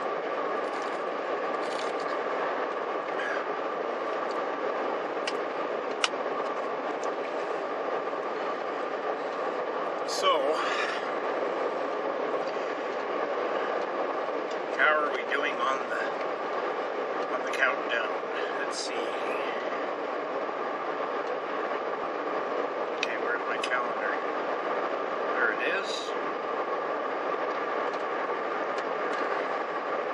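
Steady road and engine noise inside a moving car's cabin, a constant rumble with a faint steady whine.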